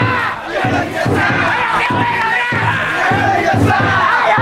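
Festival float bearers shouting and chanting together over the steady beat of the float's taiko drum, about two beats a second.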